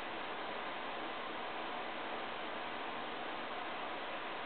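Steady, even hiss of background room noise with no distinct sounds.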